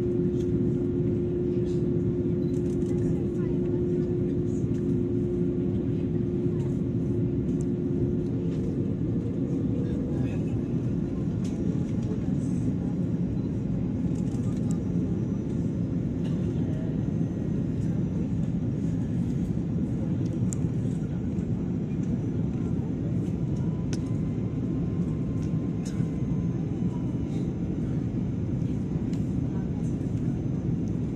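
Steady rush of airliner cabin noise from the engines and airflow during the descent to landing, with a steady hum that stops about eight seconds in.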